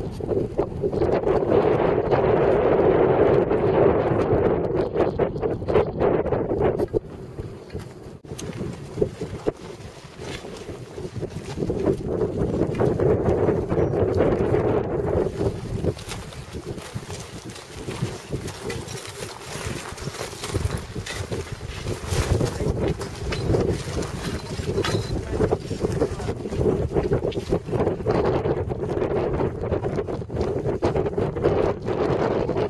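Wind buffeting the camcorder's microphone, a gusty low rumble that swells and eases, dropping away for a few seconds about a quarter of the way in before rising again.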